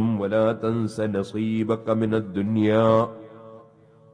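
A man's voice delivering a religious address in a chant-like, sing-song cadence. It breaks off about three seconds in, leaving a short pause.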